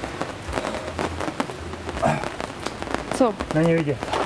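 Steady rain pattering on a hard surface, a dense crackle of drops, with a man's voice speaking briefly in the last second.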